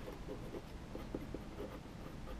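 Pen writing on paper: a quick run of short, separate strokes as words are lettered by hand.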